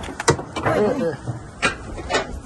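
Handling noise as a flag is taken down at a flagpole and its halyard worked by hand: sharp knocks, one just after the start and one past the middle, among rustling and scraping. A short bit of muffled voice comes in between.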